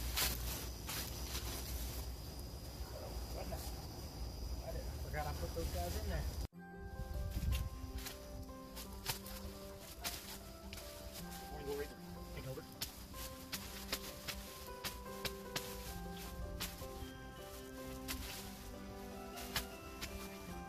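A machete hacking and rustling through dry corn stalks and vines, with a sharp chop at the start. About six seconds in, this sound cuts off abruptly and background music takes over for the rest.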